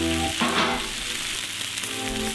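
Bacon rashers sizzling steadily as they fry in a nonstick frying pan, with music over it.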